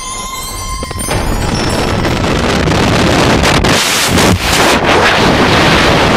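Rock music breaks off about a second in, giving way to a loud, steady rush of freefall wind across the camera's microphone, dipping briefly a few times.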